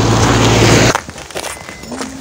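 Loud, steady noise of a nearby car engine running, with a low hum, which cuts off abruptly about a second in; after that only faint sounds remain.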